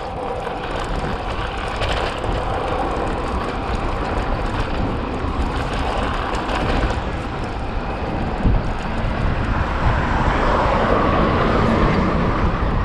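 Steady rush of wind buffeting the microphone, mixed with the rolling hum of road-bike tyres on asphalt, while riding along at speed. It grows slightly louder near the end.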